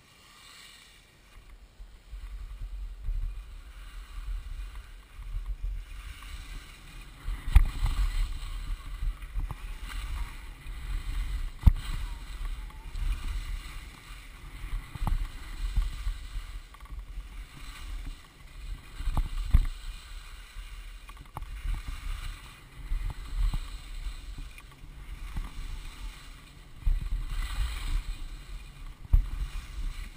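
Wind buffeting a helmet camera's microphone as the skier heads downhill, a rushing low rumble with the hiss of skis scraping over packed snow, building about two seconds in. A few sharp knocks break through, the loudest a little after a third of the way in.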